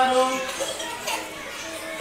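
Children's voices in chorus chanting the two times table in Bengali, with overlapping chatter from the class; the chant is loudest in the first half second.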